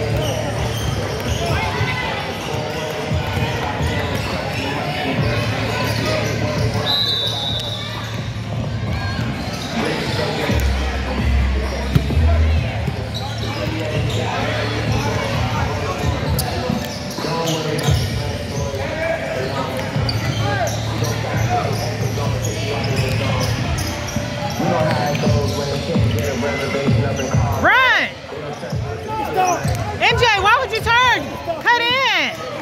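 Basketballs bouncing on a hardwood gym floor during play, with sneakers squealing on the court near the end, all echoing in a large gym.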